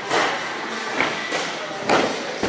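A thud near the end as a person lands in a pit of loose foam blocks, over the noise of voices in a large hall.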